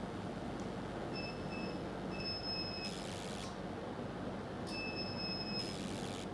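CO2 fractional laser machine firing: a high electronic beep, each followed at once by a short hiss, twice (with a pair of shorter beeps before the first), over the machine's steady low hum.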